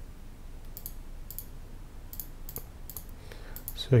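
A run of computer mouse clicks, several in quick pairs, against a quiet room.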